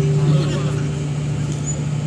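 A live band's final chord held and ringing out: one steady low note with overtones that slowly fades, with voices over it.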